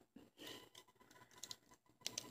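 Near silence, with faint handling rustle and a small click of the action figure's plastic joints as its arm is turned by hand.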